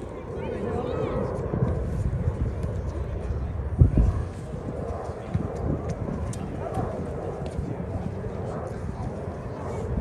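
Indistinct voices of players and people on the sideline across an outdoor field, with a low rumble of wind on the microphone throughout. A single brief low thump comes about four seconds in.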